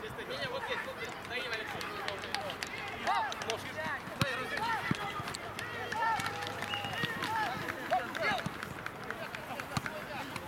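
Footballers' shouts and short calls to one another across an outdoor pitch during play, coming every second or so, with a few sharp knocks in between.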